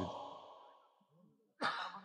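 A man's voice trailing off into a short pause, then a sigh into the microphone near the end, lasting under half a second.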